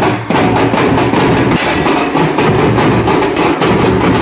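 Folk orchestra playing loudly, with drums and other percussion keeping a steady beat.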